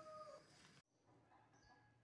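A faint, long drawn-out animal call with a slowly falling pitch, fading out in the first half-second. The sound drops away abruptly just under a second in, and a fainter call of the same kind follows.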